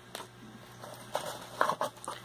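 Rustling of shredded-paper packing, with a few light clicks, as hands dig in a box and lift out a small plastic pump head. The sounds are short and scattered, busier in the second half.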